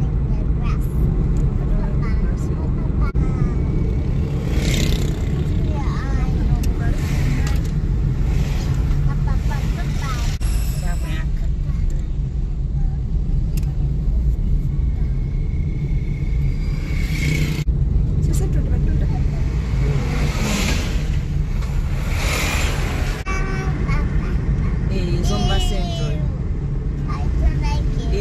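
Steady low rumble of a car driving along a paved road, heard from inside the cabin, with voices talking over it on and off.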